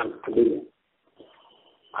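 A man's voice draws out the end of a word for about half a second, then stops; in the pause a faint, thin high tone holds for under a second.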